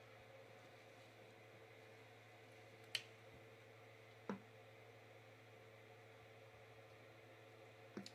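Near silence: faint steady hum of room tone, broken by two brief sharp clicks about three and four seconds in.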